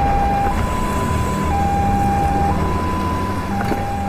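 Ambulance siren sounding a two-tone hi-lo call, switching between a higher and a lower pitch about once a second, over a low rumble.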